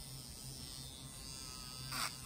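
Small portable electric nail drill (e-file) with a sanding band running, a faint steady electric buzz.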